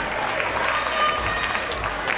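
Crowd calling out and clapping: a steady din of scattered shouts over applause.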